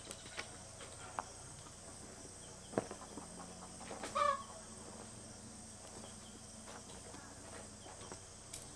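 A chicken clucks once, briefly, about four seconds in, over a quiet background with a few small clicks.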